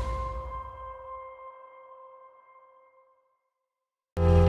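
The tail of a cinematic trailer impact hit: a deep rumble dying away under a metallic ring of several steady tones that fade over about three seconds, then silence.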